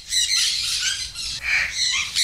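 A flock of parrots squawking and chirping: many short, high calls overlapping in a busy flurry.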